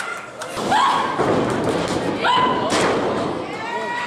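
Wrestling-ring impacts, bodies and feet thudding on the ring canvas, with one sharp thud a little under three seconds in. Short shouted voices sound over the impacts.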